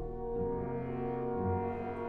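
Symphony orchestra playing slow, heavy sustained chords, with horns and low brass prominent over the strings and the chords shifting about once a second.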